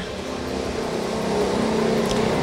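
Street traffic: a steady engine hum and hiss, growing slightly louder.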